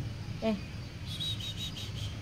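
A run of quick, high-pitched bird-like chirps starting about a second in, over a low steady background hum.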